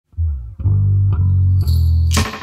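Opening of a rock song: a bass guitar plays a line of low notes, a new note about every half second. A bright, hissy high sound joins near the end.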